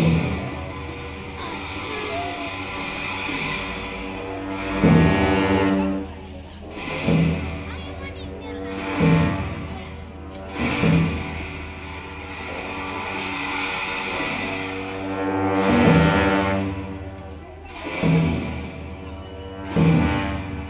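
Tibetan Buddhist monastic ritual music for a cham dance: sustained low horn tones under drum and cymbal strikes that fall about every two seconds, with a break in the middle, and a higher wavering horn or reed line that comes in twice.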